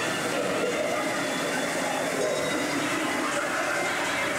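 Steady running noise of a dark-ride vehicle moving along its track, heard from on board, with muffled show voices over it.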